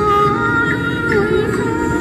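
A woman singing through an amplified handheld microphone, accompanied by a violin, with notes held long and gliding from one to the next.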